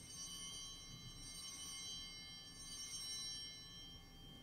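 Altar bells ringing at the elevation of the consecrated host: several high, clear tones that start at once, swell twice and linger.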